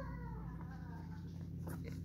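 A faint, high voice-like call gliding down in pitch in the first second, over a steady low hum, with a few faint clicks later on.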